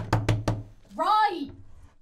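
Four quick knocks on a wooden door, then a voice calls out a single word, its pitch rising and then falling.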